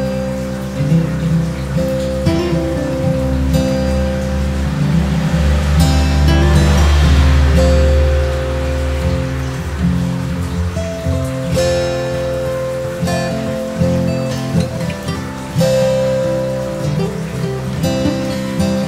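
Background music with guitar-like plucked notes over sustained chords, swelling with a wash of hiss about six to eight seconds in.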